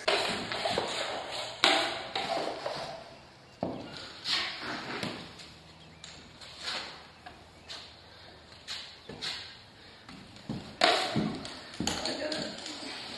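Drywall taping knife scraping thin joint compound off the face of a drywall sheet in irregular strokes, with a few sharp knocks of the knife. The mud has been left to soak into the board to soften it for bending.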